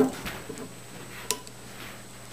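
Metal prongs of a twist-up cork puller clicking against the glass lip of a wine bottle as they are set in beside the cork: a light click at the start and a sharper one a little past the middle.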